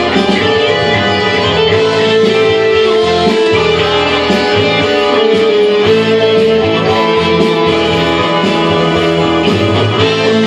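Solid-body electric guitar played live through an amplifier, a lead line with long sustained notes.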